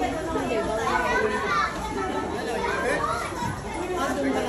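Several children's voices chattering and calling out over one another as they play, with adults talking among them.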